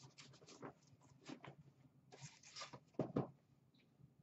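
Faint rustling and scraping of a ribbon bow being untied and pulled off a cardboard box: a string of short rustles, the loudest about three seconds in.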